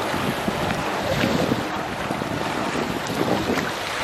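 Small lake waves lapping and breaking on a sandy shore, with steady wind buffeting the microphone.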